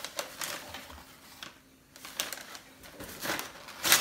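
Tissue paper crinkling and cardboard packaging rustling as they are pulled out of a gift box, in short irregular crackles with a brief lull about halfway and the loudest rustle near the end.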